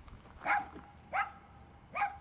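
A dog barking three times, short barks well spaced out, the last right at the end.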